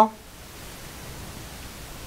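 Faint, steady hiss of room tone with no distinct sound event.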